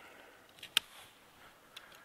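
Hand pruning secateurs clicking: one sharp click a little under a second in, with a fainter click just before it and another near the end.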